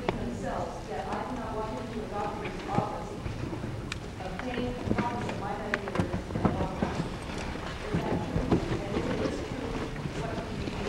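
An audience member's voice, off-microphone and too distant to make out, asking a question, with scattered knocks and clicks.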